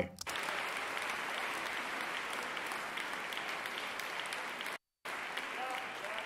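Recorded audience applause from a choir concert in a hall, played back at a lowered level. The playback cuts out for a moment shortly before the end and resumes, and a man's voice begins faintly over the clapping near the end.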